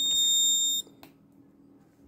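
Electronic buzzer alarm sounding a steady high-pitched tone, set off by an over-temperature reading from the body temperature sensor. It cuts off suddenly a little under a second in, and a faint click follows.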